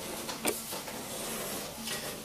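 Pause with a faint, steady background hiss and a single short click about half a second in.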